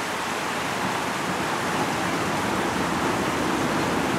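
A steady, even rushing noise with no breaks or distinct events.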